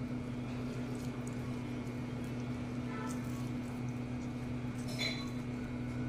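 A steady low hum, with a few faint squelches and drips about three and five seconds in as a lemon half is squeezed by hand, its juice dripping into a pan.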